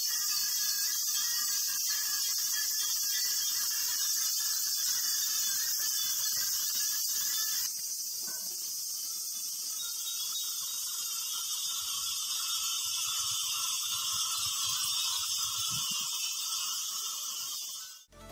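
Hundreds of small glass Japanese wind chimes (furin) ringing together in a dense, continuous high shimmer. The level drops slightly about eight seconds in.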